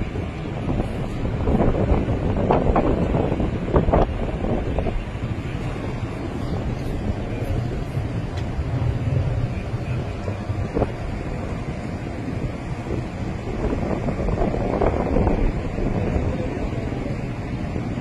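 Wind rumbling on a phone microphone outdoors, swelling in gusts a few seconds in and again near the end.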